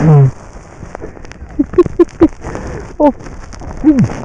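Short vocal sounds from a skier who has just fallen in deep powder snow: a falling groan at the start, a quick run of three or four short bursts like laughter in the middle, and two more short cries near the end, with a faint rustle of snow between them.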